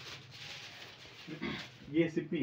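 A man's voice, low and indistinct, starting about a second and a half in after a faint lead-in.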